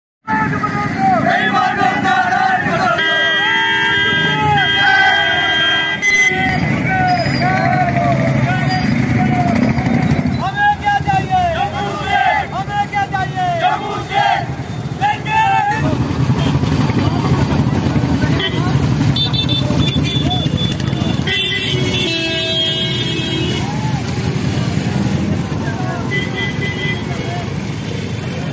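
A procession of motorcycles and scooters running together, with horns honking about three to six seconds in and again a little past twenty seconds. Voices shout repeatedly over the engines through the middle stretch.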